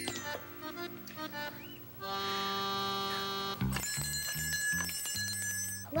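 A bell rung by pulling its hanging cord: a sustained chiming ring, then a run of quicker repeated strikes, over light background music.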